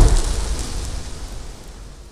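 Sound effect of a burst of flame: a deep rushing noise that fades away steadily.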